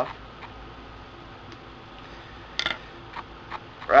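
A few faint ticks and one sharper click about two and a half seconds in, from small scissors snipping the excess tubing at a fly-tying vise, over a low steady hum.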